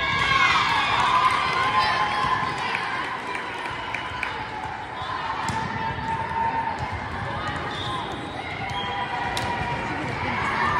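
Volleyball rally in a gym: players' calls and spectators' chatter, with sneakers squeaking on the hard court floor and a couple of sharp ball hits, about five and nine and a half seconds in.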